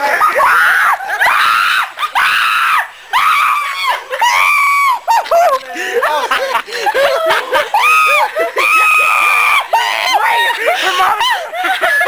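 A person screaming in panic: repeated high-pitched shrieks, some of them held for up to a second.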